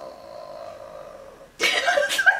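A woman holds a long, strained vocal sound at one pitch, fading until about a second and a half in, when a loud burst of laughter breaks out.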